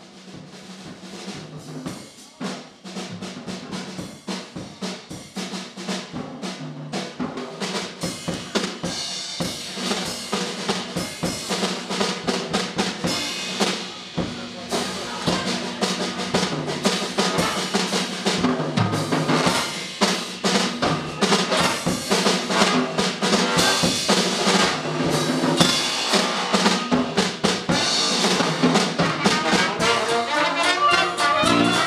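Drum kit playing a quick, even beat that builds steadily louder.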